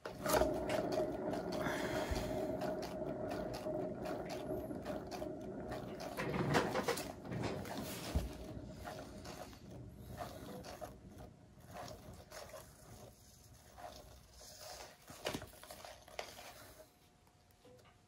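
A hand-spun turntable carrying a painted canvas, its bearing whirring with a steady hum that fades as it slows to a stop near the end.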